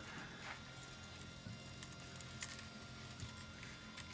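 Faint steady whine of a desktop 3D printer's stepper motors as it prints, with a couple of small clicks about two seconds in.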